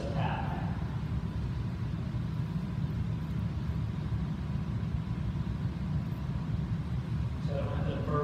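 Steady low background rumble, with short bits of a man's speech at the very start and again near the end.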